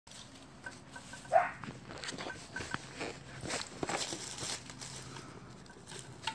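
A dog rummaging in dry leaves and nosing an aluminium beer can: irregular crackling of the leaves, scrapes and light knocks of the can, and paw steps. A brief squeak that rises in pitch about a second and a half in is the loudest sound.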